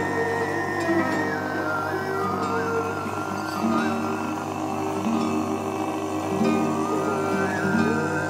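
Tuvan throat singing: a steady low droning voice with a high, whistle-like overtone melody gliding and stepping above it.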